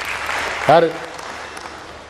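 Audience applause, a steady patter of clapping that fades away over about a second and a half, with one short spoken syllable from the speaker breaking in about two-thirds of a second in.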